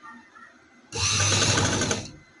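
Samara domestic sewing machine running in one short burst of about a second, starting about a second in, as it stitches across pressed tucks in fabric.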